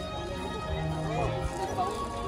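Crowd of guests chattering, with background music playing.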